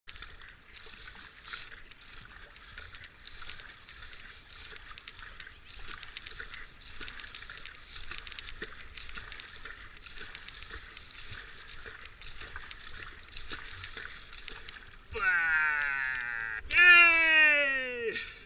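Kayak paddle strokes dipping and splashing in calm water, with a steady wash of water around the hull. Near the end, two loud cries from a voice, each sliding steeply down in pitch, one after the other.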